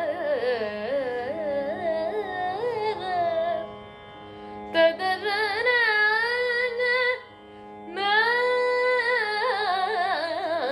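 A female Carnatic vocalist sings raga Hindolam in long phrases full of oscillating gamakas, over a steady tanpura-like drone. The voice pauses twice, about four seconds in and again about seven seconds in, leaving only the drone. A brief sharp click comes just as she resumes, about five seconds in.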